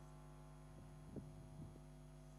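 Near silence: a steady low electrical hum, with a few faint soft taps about a second in.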